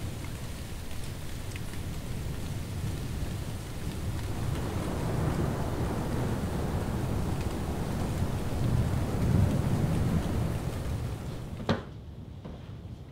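Thunderstorm: steady rain with thunder rumbling low, swelling in the middle and again later. A short sharp crack comes near the end, and the storm sound drops away right after it.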